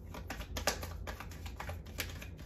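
A deck of tarot cards being shuffled by hand: a quick, uneven run of small card clicks and flicks, with one sharper snap a little under a second in.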